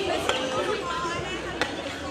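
Background chatter of a watching crowd of students, with two sharp knocks, the louder one over a second and a half in.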